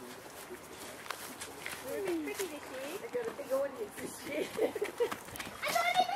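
Children's voices calling and chattering at a distance, high-pitched and wavering with no clear words, growing louder and closer near the end.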